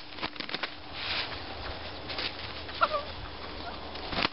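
Two roosters fighting: scattered scuffling knocks and brief rustling bursts, with one short rooster call about three seconds in.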